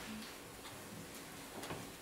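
Quiet room tone with a few soft, faint ticks or clicks.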